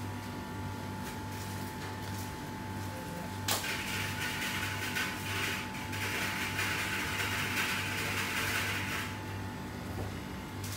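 Steady machine hum with a sharp click about three and a half seconds in, followed by several seconds of hissing noise that stops near the end.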